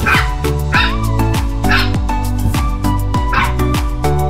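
A ten-week-old Pembroke Welsh corgi puppy giving four short, high-pitched yips, over background music with a steady beat.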